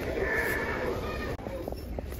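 An animatronic Halloween prop playing a recorded drawn-out groaning voice, set off by a step-on pad. It cuts off suddenly a little over a second in, followed by a few light clicks.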